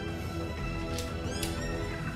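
Dramatic background score with sustained held chords, and a brief high sweeping flourish about a second in.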